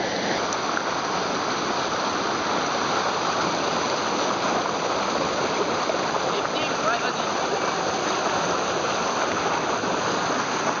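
Whitewater of a small cascade rushing over rock close to the microphone, a steady, unbroken wash of water noise.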